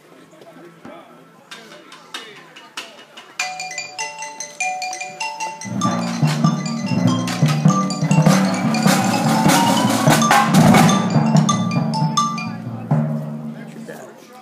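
Percussion ensemble playing: marimbas, xylophones and bells with timpani and drums. A few mallet notes start it off, the whole ensemble comes in about six seconds in with deep timpani, and it eases off near the end.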